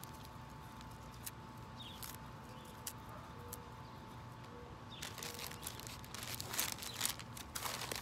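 Quiet paper-and-plastic handling sounds: a few faint clicks and rustles as greens are torn by hand over a plastic zip-top bag, then newspaper crinkling, louder, from about five seconds in.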